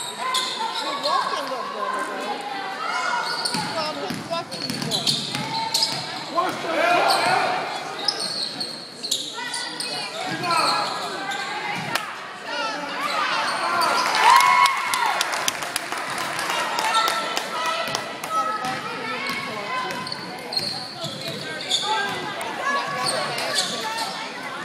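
Basketball game in a gymnasium: a ball bouncing on the hardwood court in repeated short knocks, with indistinct voices of players and spectators calling out over the hall.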